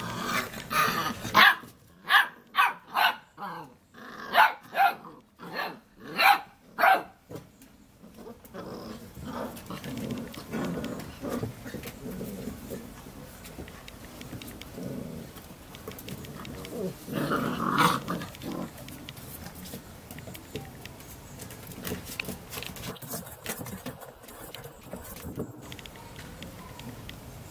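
Labrador puppies barking at play: a quick run of about a dozen short, loud barks over the first eight seconds, then quieter, lower scuffling and grumbling, with one more bark a little past the middle.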